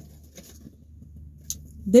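Faint rustling of a fast-food takeout box as a chicken tender is picked out of it, with one sharp click about a second and a half in, over a steady low hum.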